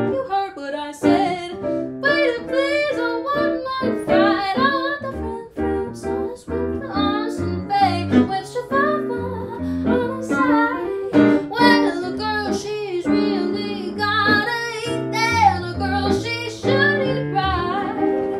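A woman singing a swing-style song to electronic keyboard accompaniment, her voice sliding up and down over steady chords.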